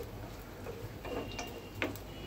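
Bay leaves and dried red chillies frying in hot oil while a wooden spatula stirs them in a non-stick pan: scattered sharp ticks and pops, a few each second, over a low hiss.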